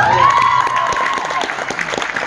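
Gymnastics floor-routine music ends and spectators applaud, the clapping building from about half a second in. A long high note rises and holds for about a second over the start of the clapping.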